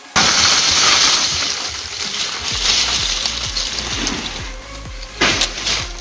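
Dry walnut shells poured out of a bucket onto a heap of soil mix: a loud clattering rattle that starts suddenly, runs for about two seconds, then thins into scattered small clicks.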